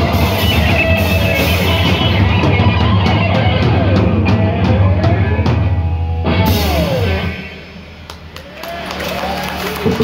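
Hardcore punk band playing live: drum kit, distorted electric guitars and vocals. About seven seconds in the full band cuts out sharply, leaving a quieter stretch before guitar and voice build back up.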